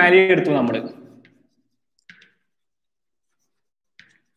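A man's voice speaking for about the first second, then near silence broken by a brief, faint scrape of chalk on a blackboard about two seconds in.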